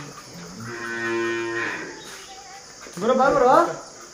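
A humped zebu bull lowing: one long, steady, low moo lasting over a second. About three seconds in, a louder, wavering voice-like call follows.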